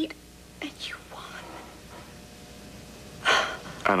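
A pause in a conversation with faint, steady background tone. About three seconds in a person takes a sharp, audible breath, and speech begins just after it.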